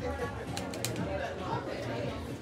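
Indistinct voices murmuring in the background, with a quick cluster of three or four sharp clicks about half a second in.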